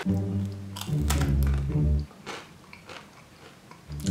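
Someone biting and chewing a piece of Icelandic dried fish (harðfiskur), with small crunching clicks. Background music with low bass notes plays under it and drops away about halfway through.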